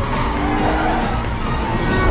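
Action-film freeway chase soundtrack: vehicle engines and tyres skidding, mixed with a music score, with an engine's pitch rising briefly in the first second.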